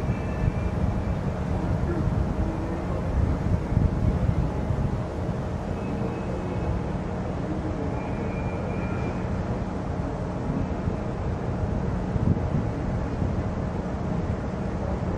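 Outdoor camera audio dominated by a steady, uneven low rumble of wind buffeting the microphone, with a faint background haze.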